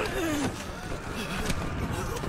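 Battle-scene soundtrack of an animated episode: a steady low rumble with a voice sliding down in pitch over it in the first half second.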